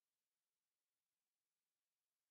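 Near silence: a pause between spoken meditation prompts.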